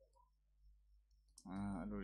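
Faint computer-keyboard key clicks as a word is typed, then a man's voice starts speaking about a second and a half in, louder than the typing.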